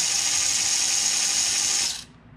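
8000 kV brushless motor and gear train of a 1/24-scale SCX24 crawler, run by a Furitek Lizard ESC, spun at full throttle with the wheels off the ground: a steady, high-pitched whine that cuts off suddenly near the end.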